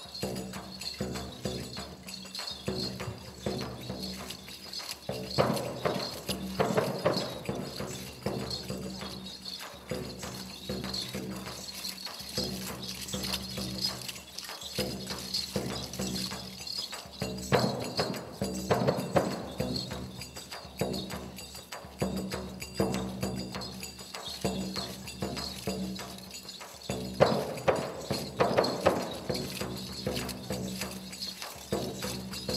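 Drum music played for a dancing Marwari horse: a drum keeps a steady dance beat under a held pitched tone, swelling louder about five, seventeen and twenty-seven seconds in.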